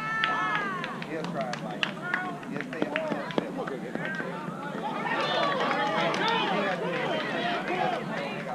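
Many overlapping voices of youth baseball players and spectators calling out and shouting across the field, with one long high call at the start and the voices thickening about five seconds in. A few sharp clicks sound in the middle.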